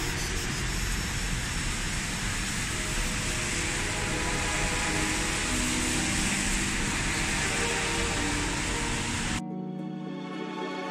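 Steady rushing noise of a wet city street, traffic and rain, laid over soft music with held tones. The street noise cuts off suddenly near the end, leaving the music alone.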